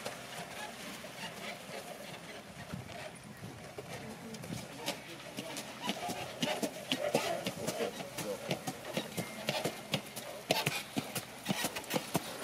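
Hoofbeats of a shod trotter walking, a run of irregular sharp clicks that grows crisper from about four seconds in, as the hooves meet paving. Low voices carry in the background.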